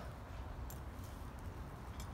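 Low, steady outdoor background rumble with a faint short tick about two-thirds of a second in.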